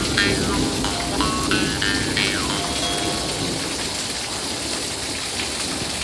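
Small brass double-reed Dan Moi jaw harp played against the lips: twanging notes whose overtones jump and glide in pitch, ending with a falling slide and a short held note about three seconds in. Steady rain runs throughout and is all that is left after that.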